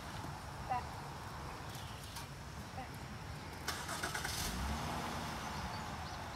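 A car engine running, its low rumble swelling and then falling away about four to five seconds in.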